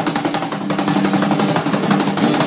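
Acoustic guitar chord strummed in fast, even strokes, held as a continuous tremolo strum.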